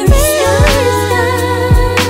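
R&B background music: held, gliding melodic notes over a steady beat with deep bass drum hits.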